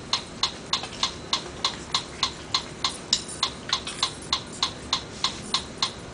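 Steady metronome clicks, about three a second, evenly spaced: a count-in tempo before the accompaniment starts.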